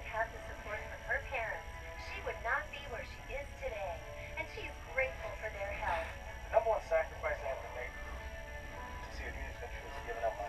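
A small television playing quietly: voices and music through its small speaker, sounding thin.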